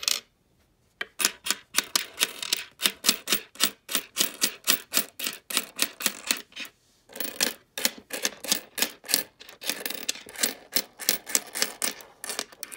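Canadian nickels clicking against each other and the tabletop as a hand slides them off a stack and spreads them out, a quick run of sharp metallic clicks at about four a second. The clicks start about a second in and pause briefly partway through.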